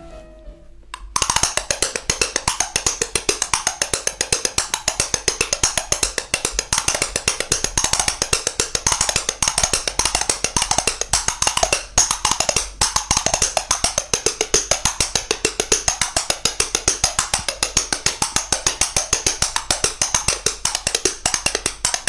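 Fast, even percussion playing with many sharp strikes a second; it starts about a second in and keeps a steady rhythm throughout.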